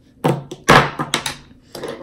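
A short run of knocks and sharp clicks: makeup items and a brush being handled and set down on a hard surface. The loudest knock comes in the first second, with several quick clicks after it.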